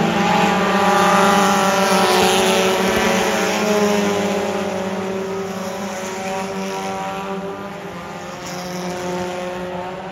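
A pack of four-cylinder mini stock race cars racing around a dirt oval. Their engines are loudest in the first few seconds as the cars pass close, then fade as they move away.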